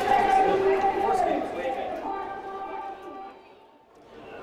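Voices of people close to the microphone over a stadium crowd, fading away to near silence in the last second.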